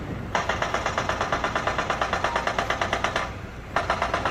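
Construction machinery hammering in a rapid, even train of blows over a low engine rumble. The hammering stops about three seconds in and starts again shortly before the end.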